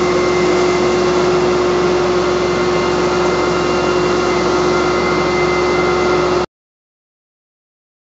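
Truck-mounted carpet-cleaning machine running with its vacuum pulling through the hose to a Rotovac rotary extraction head working the carpet: a steady drone with a constant hum. It cuts off abruptly about six and a half seconds in.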